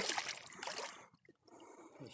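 Water sloshing and trickling as a submerged landing net is worked in a lake and a large common carp swims free of it, dying away about a second in.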